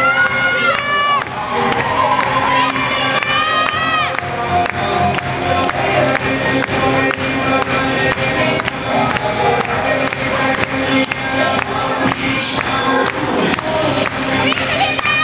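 Upbeat funk dance music with a steady beat played loud over a PA system, with an audience cheering and whooping over it at times.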